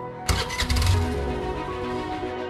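Motor scooter engine starting with a sudden burst about a quarter second in, then running on under background music.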